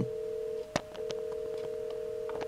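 A steady two-tone telephone signal from a handset earpiece, with a sharp click a little under a second in. It is the tone heard as a lower-precedence call is preempted and cut off on the switch.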